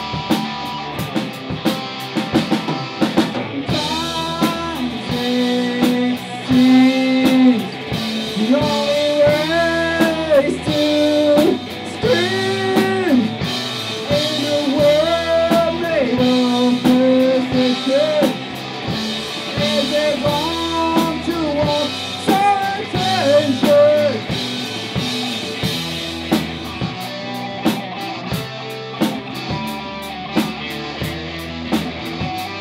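A rock band jamming live: two electric guitars, bass guitar and drum kit playing together. A bending melodic line rides over the band from about four seconds in until about twenty-four seconds in.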